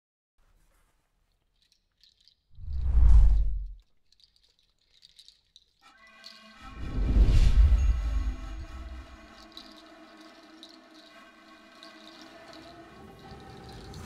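Logo sting sound design: a deep whoosh swelling and dying away, a few faint high glints, then a second deep hit that opens into a held synthesized chord, slowly fading.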